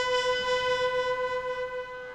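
Bugle holding one long, steady note, part of a bugle call sounded for a funeral guard of honour.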